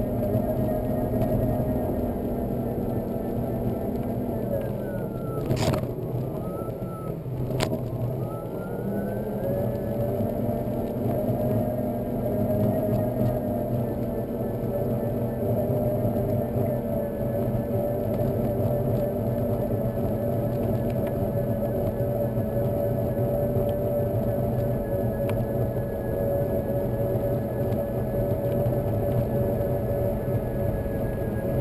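Solowheel electric unicycle's motor whining steadily over the rumble of its tyre on a wet road. About four seconds in the whine falls in pitch as it slows, two sharp clicks sound a couple of seconds apart, then the whine climbs back and holds steady.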